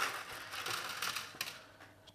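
Sugar-shelled chocolate sweets (Smarties) being picked out of one thin plastic plate and dropped onto another, giving a few light, scattered clicks and rattles against the plastic.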